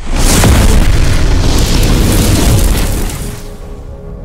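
A loud explosion sound effect: a deep boom that starts suddenly and rumbles for about three seconds before fading, with music underneath.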